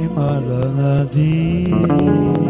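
Slow Roma halgató song: a low male voice holds and bends long notes over strummed guitar chords.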